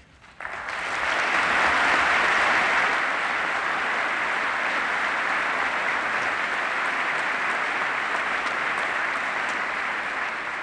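A large audience applauding. It breaks out just after the start, swells over the first two seconds, holds steady, and eases slightly near the end.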